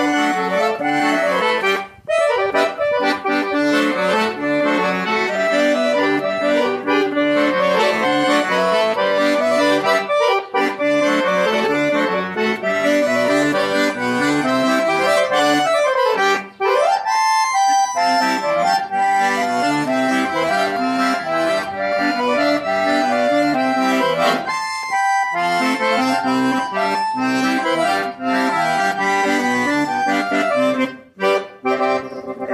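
Scandalli Super VI piano accordion playing a quadrilha junina melody with chords underneath, breaking off briefly a few times.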